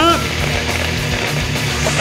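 Hard rock music with distorted guitar plays over the noise of two countertop blenders running. One of them, a Ninja, has its blades jammed by the load, so its motor strains and cannot turn.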